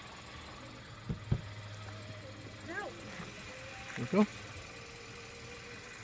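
Quiet outdoor background with a faint low steady hum, two short knocks about a second in, and a brief spoken word near the end.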